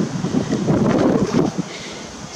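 Wind blowing across the microphone: an uneven, gusty rush of noise.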